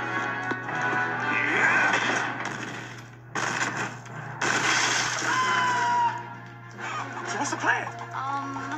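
Film soundtrack: dramatic orchestral score mixed with loud crashing sound effects, two sudden bursts about three and four seconds in, over a steady low hum.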